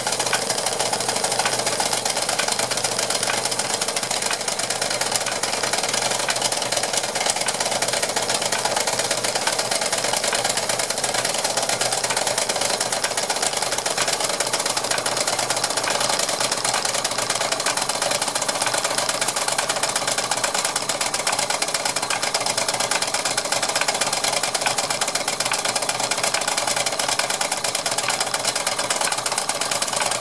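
Antique 1930s Doll & Co tin-plate toy mill and hammer running, belt-driven from a model stationary engine. Its tin works and hammer make a fast, continuous, even rattle over a steady hiss.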